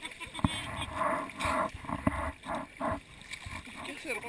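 Seawater sloshing and splashing around a camera held at the water's surface, in short irregular surges.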